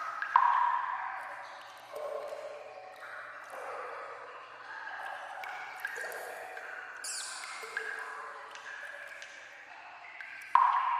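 Water drops falling into standing water in an echoing sewer tunnel: separate ringing plops at different pitches, irregularly about every one to two seconds, the loudest just after the start.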